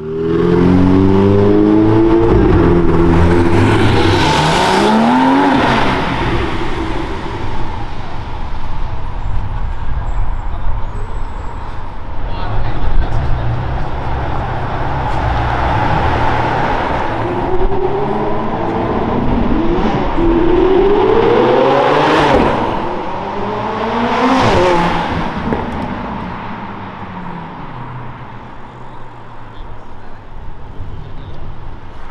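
Supercar engines accelerating hard along a city street, their pitch climbing sharply through the revs several times: once at the start, then in a run of pulls in the second half. Traffic noise fills the gaps between.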